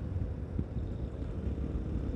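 Yamaha Ténéré 250's single-cylinder engine running steadily while riding, mixed with wind noise on the microphone, heard as a steady low rumble.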